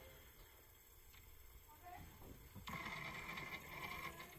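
Near silence, then faint, indistinct voices from a little past halfway.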